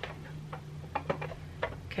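Several irregular light clicks and taps from a small clear plastic divided box as its lid is pressed down; the lid won't snap shut because its top is bowed.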